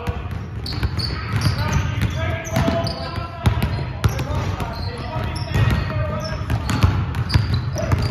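Basketballs bouncing over and over on a hardwood gym floor during dribbling and shooting drills, with players' voices in the background.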